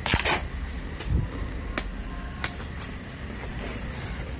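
A cardboard gift box in plastic wrap being handled and pulled open: a short rasping rustle at the start, a dull thump about a second in, then a couple of light clicks.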